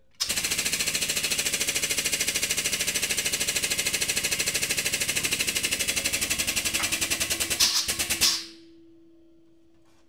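Hydraulic shop press pump chattering in rapid, even pulses as it drives the ram down onto a 3D-printed die, pressing sheet metal up to about 6 tons; a few louder pulses come just before it stops suddenly, leaving a faint steady hum.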